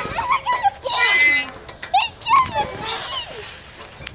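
Children's voices: a string of short, high-pitched calls and squeals with no clear words, as kids play.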